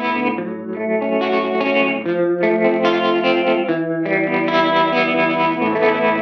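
Electric guitar played through a UAFX Ruby '63 Top Boost amp-emulator pedal, which models a Vox AC30, recorded direct with no amplifier: a run of held, ringing chords that change every second and a half or so.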